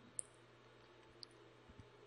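Near silence with a few faint computer mouse clicks: one about a quarter second in, another at just over a second, and two small ones close together near the end.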